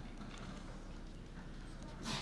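Quiet room tone: a low steady hum with scattered faint light clicks and taps.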